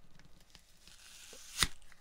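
Faint hiss in a pause between words, broken by one sharp click about one and a half seconds in, with a softer tick just before it.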